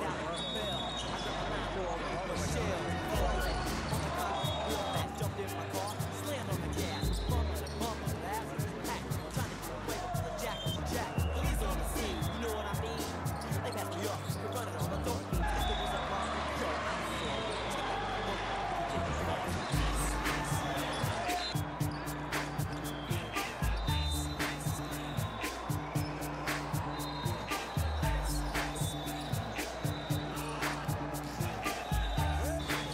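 Indoor volleyball rallies: the ball being passed and hit again and again, with sharp, echoing contacts, over players' and spectators' voices. A music track with a steady bass line plays underneath.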